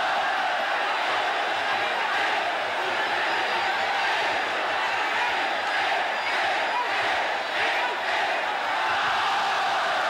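Muay Thai stadium crowd shouting and cheering without a break, a dense roar of many voices at a steady level.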